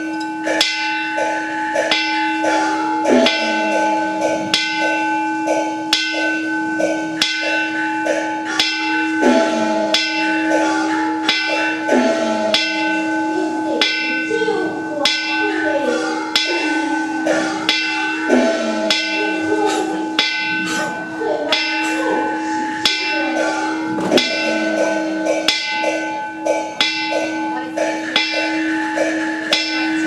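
Taoist ritual percussion: a metal bowl bell ringing with steady, lasting tones, struck with a wooden fish in a steady beat of a little under two strokes a second. A man's chanting voice wavers over it through the middle of the stretch.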